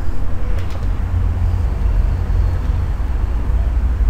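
Steady low rumble of background noise, with a couple of faint clicks about half a second in.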